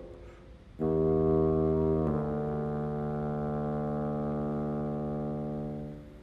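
Solo bassoon: after a brief pause it sounds a note about a second in, changes note, and holds a long sustained note of about four seconds that fades away near the end.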